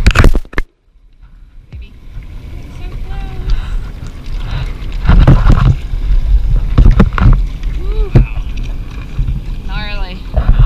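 Wind buffeting the camera microphone and water sloshing around a small boat, with a heavy low rumble. About half a second in, the sound cuts out almost to silence for a second, then comes back. Faint voices are heard in snatches.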